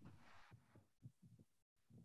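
Near silence: faint room tone with a few weak low thuds.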